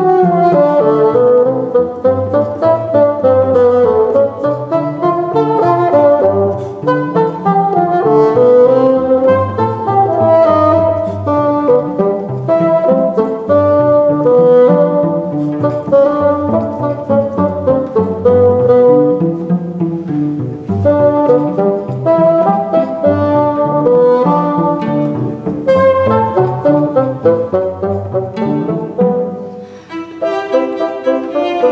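Bassoon and cello playing a duet, sustained reedy bassoon melody over bowed cello lines, with a brief lull just before the end.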